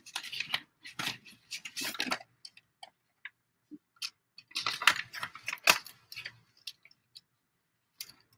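Paper envelopes rustling and crinkling as they are picked up and handled, with small taps and clicks, in two spells: near the start and again past the middle.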